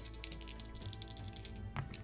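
Two dice rolled into a padded dice tray, a quick run of light clicks and rattles as they tumble and settle, with a last click just before they come to rest. Quiet background music runs underneath.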